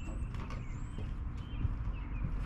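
Creaks and a couple of short knocks from someone stepping about inside an enclosed cargo trailer, over a steady low rumble.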